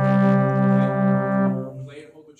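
Trombone holding one long, loud low note that fades out near the end.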